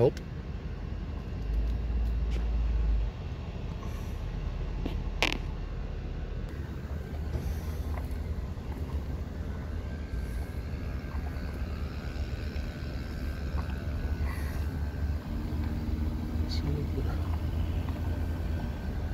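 Steady low road and engine rumble heard from inside a moving vehicle at highway speed, with a louder low stretch early on and a single sharp click about five seconds in.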